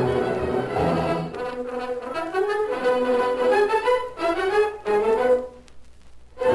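Orchestral music led by brass, a melody of rising phrases, playing out the end of the radio episode; it breaks off briefly near the end before the orchestra comes back in.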